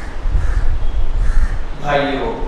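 Crows cawing faintly a few times over a steady low rumble, with a man's voice starting near the end.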